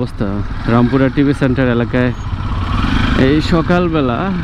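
A voice talking over the steady low running of a motorcycle engine and street traffic, moving slowly.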